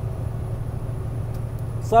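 Steady low drone of a vehicle's engine and tyres heard from inside the cab while cruising at highway speed.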